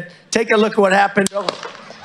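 A man's voice over an outdoor rally PA, then a single sharp rifle shot cracks out a little past halfway, the opening shot fired at the speaker.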